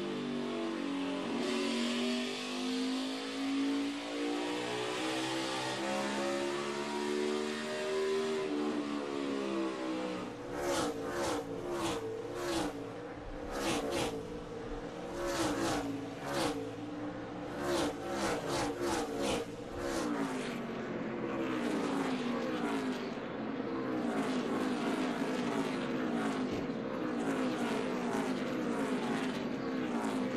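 NASCAR Cup stock cars' V8 engines at race speed on a short oval, cars passing one after another, each engine's pitch rising and then falling as it goes by. A rapid run of sharp crackles comes in the middle, and near the end several cars go by together in a pack.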